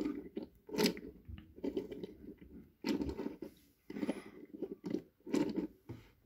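Handling noise of small die-cast toy forklifts being moved and set down on a wooden surface: a run of short, irregular crackly rustles and clicks, several a second.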